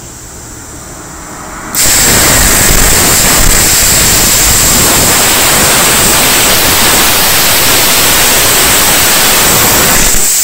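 Air plasma cutter torch from a 520TSC 3-in-1 inverter machine, set to full amperage on 60 psi compressed air: a quieter hiss of air at first, then about two seconds in the arc strikes and cuts steel with a loud, steady hiss carrying a thin high whistle.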